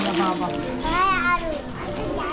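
Young children's voices chattering, with one child's high-pitched call that rises and falls about a second in.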